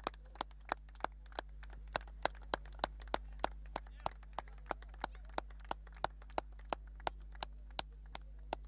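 Hand-clapping in a steady, even rhythm of about three claps a second, with a steady low hum underneath.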